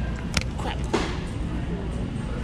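A clear plastic bulk-food bag being handled and crinkled while its twist-tie label is written on, with two short sharp crackles, about a third of a second and a second in, over a steady low hum.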